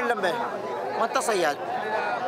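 A group of men talking over one another, several voices at once.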